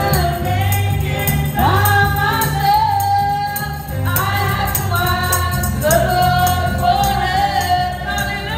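Live gospel worship music: several women sing into microphones with long held notes, backed by bass guitar and drums, with a tambourine shaken in time.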